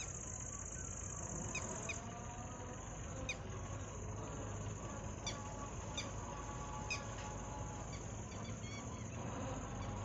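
Evening outdoor ambience: a steady high-pitched insect drone, about six short falling bird chirps, and the low steady hum of an approaching vehicle's engine.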